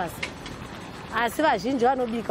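A woman speaking, pausing for about a second before going on.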